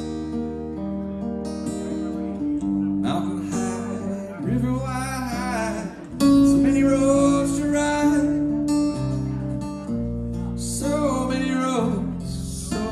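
Electric guitar played solo, a melody of held and bending notes over sustained low bass notes.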